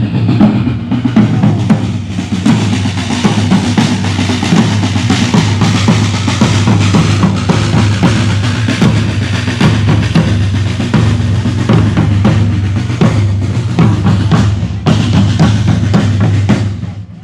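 A group of drummers playing wooden rope-tensioned marching drums together as they walk, a loud, fast, continuous beat of many strokes.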